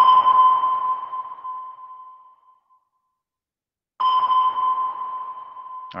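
Recorded submarine active-sonar ping: a sharp ringing tone that fades slowly over about two and a half seconds. A second identical ping follows about four seconds in.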